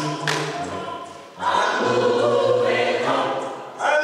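A gospel vocal group singing a cappella, a woman's voice on a microphone among them, in held notes with deeper voices beneath; the singing breaks off briefly about a second and a half in and again near the end between phrases.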